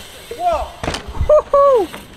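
Short wordless whoops with falling pitch, one about half a second in and two louder ones in the second half, and a single thud about a second in as a dirt jump bike lands on packed dirt.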